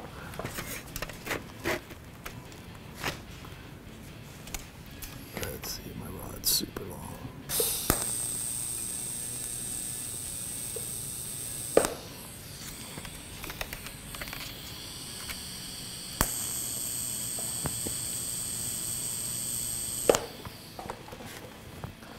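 TIG welding arc from a Miller Syncrowave 210 on thin sheet metal, struck twice for about four seconds each. Each time it is a steady hiss with a high whine that starts and cuts off sharply. Before the first arc there are a few small clicks and knocks.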